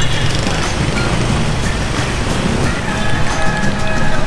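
Background music with busy street traffic rumbling underneath, with a few held notes near the end.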